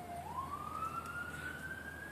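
Emergency-vehicle siren wailing: its single tone bottoms out just after the start, then rises slowly and levels off high near the end.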